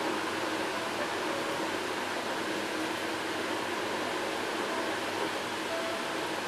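Steady, even hiss of background room noise, like a running fan, with no distinct sounds from the beadwork.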